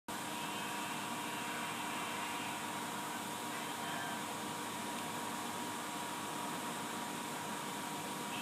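A steady mechanical hum with a constant high tone over an even hiss, unchanging throughout.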